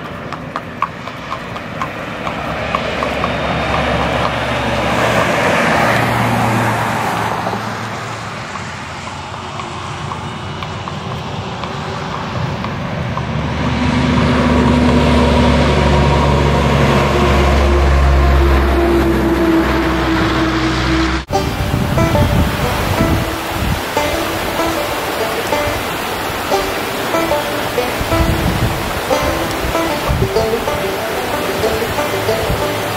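A heavy truck's engine passing on the road, building to its loudest about two-thirds of the way in, with background music; the truck sound cuts off suddenly at an edit, after which the music carries on.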